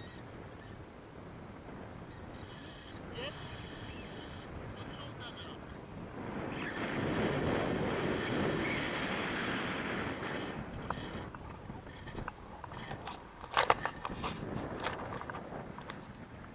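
Wind rushing over a camera microphone on a paraglider in flight. The noise swells loud for several seconds in the middle, and sharp crackles and knocks of buffeting near the end are the loudest sounds.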